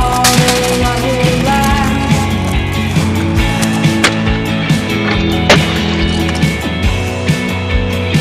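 A music track with a steady beat, with sharp clacks from a stunt scooter's deck and wheels hitting concrete and a metal rail, the clearest about four seconds in and again about five and a half seconds in.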